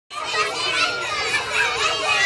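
Young children's voices, many at once and overlapping, calling out as a group.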